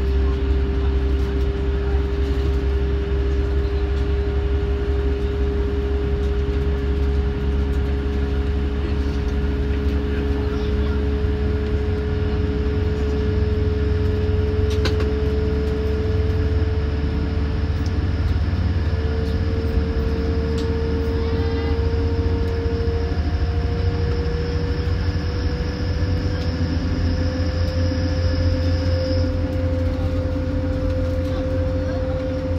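Inside a diesel passenger train pulling away: a steady low rumble, with an engine and transmission tone that rises slowly and evenly in pitch as the train gathers speed.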